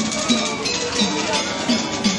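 Metallic percussion music, of the kind played by a Balinese gamelan procession: a small gong or bell-like instrument struck in a steady beat, about two and a half strokes a second.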